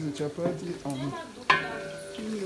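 Sliced onions frying in oil in a large aluminium pot, stirred with a wooden spoon, with a sharp ringing knock about one and a half seconds in.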